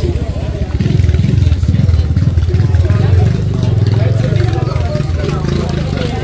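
Indistinct voices over a loud, steady low rumble.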